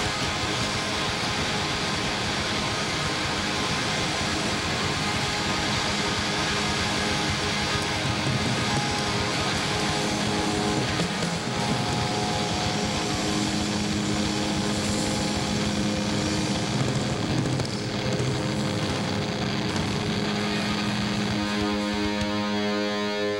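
Live rock band playing loud, with heavily distorted electric guitars over bass and drums in a dense, noisy wall of sound.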